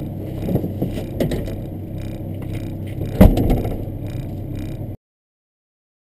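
A car engine idling steadily, heard inside the rally car's cabin, with knocks and rattles from inside the car as the driver climbs out; the loudest is a sharp thump a little past three seconds in. The sound cuts off about five seconds in.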